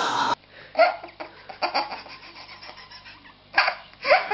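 A baby laughing in short, breathy bursts of giggles, from an old home video. The loudest bursts come about a second in and again near the end.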